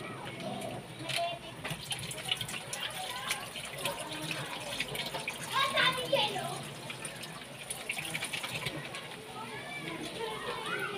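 Children's voices and chatter in the background, over faint crackling and bubbling from a thick sweet-savoury sauce simmering in a wok.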